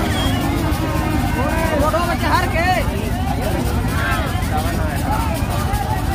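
Several people talking and calling out over a steady low rumble.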